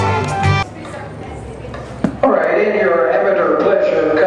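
Organ music over an arena public-address system stops about half a second in. After a quieter murmur and a single click, a man's voice comes over the PA from about two seconds in.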